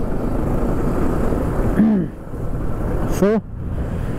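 Steady rush of wind and road noise on the microphone of a moving motorcycle, heaviest in the first two seconds. A short vocal sound about two seconds in and a spoken word near the end.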